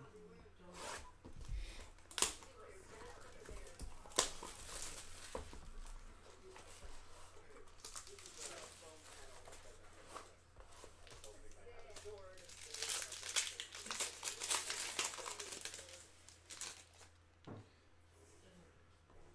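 A trading card box being opened by hand: cardboard knocks and a few sharp clicks, then plastic pack wrapping crinkling and tearing, loudest from about two-thirds of the way through as the pack inside is unwrapped.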